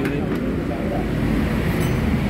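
Dongfeng S1115 single-cylinder diesel engine running steadily on test.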